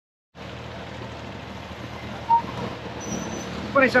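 Steady traffic noise of a busy city street, with vehicle engines running in slow traffic, starting after a moment of silence. A short, higher tone stands out about two seconds in.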